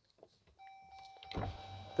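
Jeep Gladiator power window motors starting to lower the windows about a second and a half in, after a faint steady high tone begins just before.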